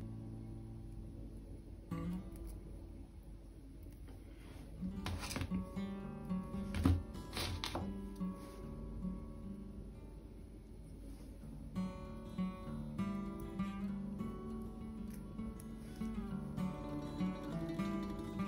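Soft background music played on plucked acoustic guitar, with held notes throughout. A few faint clicks sound about five to eight seconds in.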